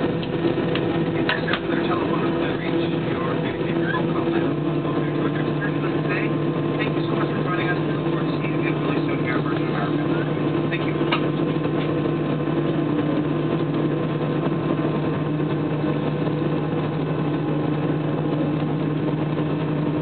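Airliner cabin noise: the jet's engines and airflow giving a steady, even hum with two low droning tones, and faint voices in the cabin.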